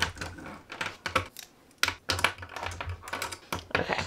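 Plastic pens being set down one after another on a desk: an irregular run of light clicks and taps.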